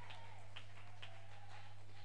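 A pause in the preaching filled by a steady low electrical hum, with a few faint ticks about half a second and a second in.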